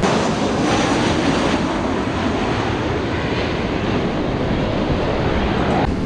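Twin-engine jet airliner flying low overhead, its jet engines making a loud, steady roar.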